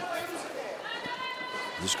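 Speech only: low voices in the hall, then a raised voice about a second in, and a man's commentary starting near the end.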